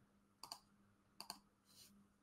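Near silence broken by two faint pairs of computer mouse clicks, the first about half a second in and the second just past a second, then a brief soft hiss near the end.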